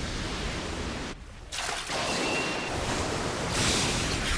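Anime battle sound effects: a sustained rushing noise over a low rumble, like a surge of energy or wind. It dips briefly about a second in and swells brighter near the end as an energy blast sweeps across.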